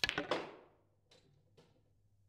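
Snooker shot played hard: a sharp click of the cue tip on the cue ball, then the cue ball cracking into the black about a third of a second later. Two faint knocks follow about a second in and near the end as the balls run on.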